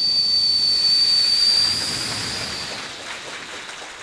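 A mimic's mouth imitation of a jet aeroplane passing over, voiced into a stage microphone: one steady high whistle over a rushing hiss that fades away over about three seconds.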